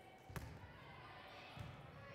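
A volleyball served overhand: one sharp smack of the hand striking the ball, in a large gymnasium, followed about a second later by a duller thump.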